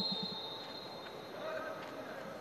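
Faint ambience of a near-empty football stadium during a penalty kick, with a distant voice calling out about one and a half seconds in.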